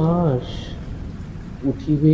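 Steady rain noise with a low rumble beneath it, laid under a man's Bengali poetry recitation; his voice trails off at the start and comes back near the end.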